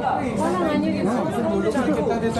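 Several people talking at once among passers-by, a steady chatter of overlapping voices.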